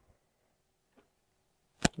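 Almost silent, with a single sharp click near the end as a metal self-tapping screw and a cordless impact driver are handled.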